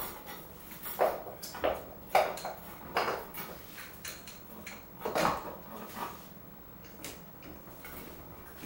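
Irregular metallic clinks and knocks, about six in the first six seconds, as the scooter's rear wheel axle and hub are worked into the metal swingarm, then a quieter stretch.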